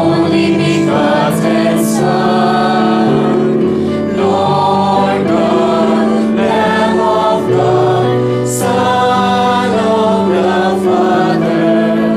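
Choir singing a hymn in held notes over steady accompanying bass notes.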